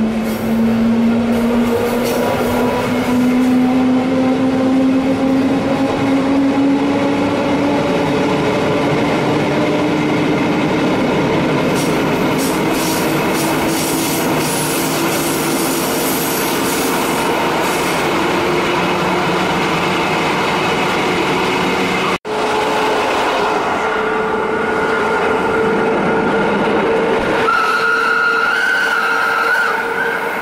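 Rhaetian Railway Ge 6/6 II electric locomotive heard from the car coupled behind it, its traction motors whining and slowly rising in pitch as the train gathers speed, over the running rumble of wheels on rail. About two-thirds of the way through, the sound cuts off for an instant and resumes with a steadier, higher whine as the train runs on.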